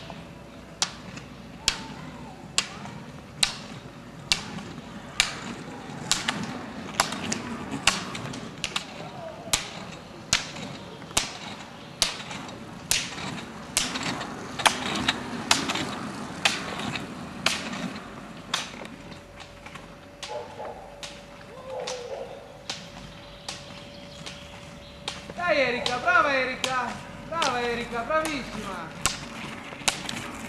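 Rollerski pole tips striking the asphalt in a steady rhythm, a sharp click every half-second or so as a skater poles uphill. Shouting breaks in near the end.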